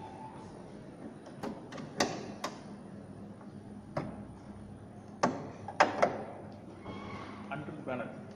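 A Ford Figo's bonnet being opened: a series of sharp metallic clicks and clanks as the latch is released, the bonnet is lifted and the prop rod is swung up and set in place. The clicks come about a second and a half to two and a half seconds in and again at about four seconds, and the loudest clanks come at about five to six seconds.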